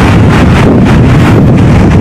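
Strong wind buffeting a clip-on lapel microphone: a loud, steady low rumble of wind noise.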